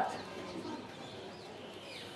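Faint bird calls, a few short high chirps in the second half, over quiet background.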